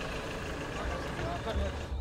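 Steady low rumble of a motor vehicle, with faint street noise over it.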